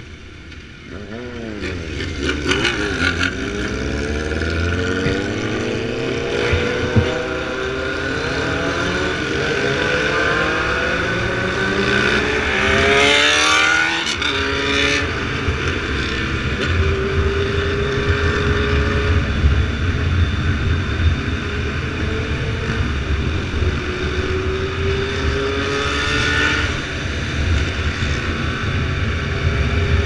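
Motorcycle engines under way in a group ride, with wind noise over the bike-mounted camera: the engine notes climb in pitch over the first dozen seconds, a sharp high-pitched rev cuts in about halfway through, and then the bikes run steadier. The nearest engine is the camera bike's BMW F800R parallel-twin.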